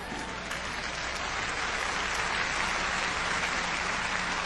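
Audience applauding steadily after a point in a sermon, growing slightly louder.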